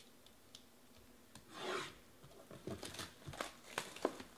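Utility knife slicing the shrink wrap on a cardboard trading-card box: one drawn-out rasping cut about one and a half seconds in, followed by small clicks and crinkles as the plastic wrap is worked loose.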